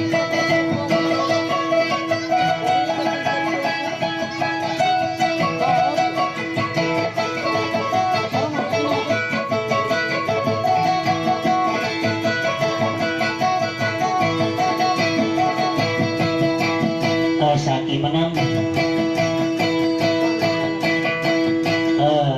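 Amplified kutiyapi, the Maranao two-string boat lute, playing a fast picked melody over a steady drone note.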